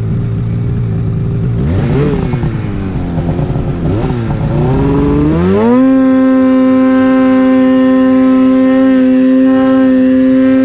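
Polaris 800 RMK Axys two-stroke snowmobile engine in deep powder. It runs at low revs, is blipped up twice around two and four seconds in, then revs up sharply about five seconds in and holds at high, steady revs.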